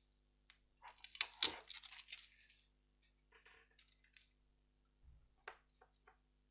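Clear cellophane tape crackling and peeling for about two seconds, with a few sharp crackles, followed by scattered light taps and clicks on a cutting mat near the end.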